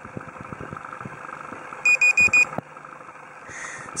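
Nokia 1100 mobile phone's alarm going off: a quick run of four short high beeps about halfway through.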